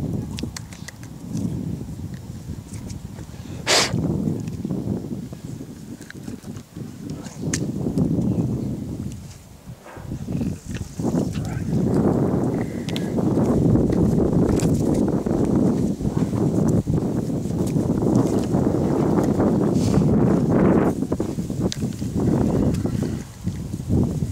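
Wind buffeting the microphone in gusts, a rough low rumble that swells and drops, loudest and most continuous in the second half. A single sharp click about four seconds in.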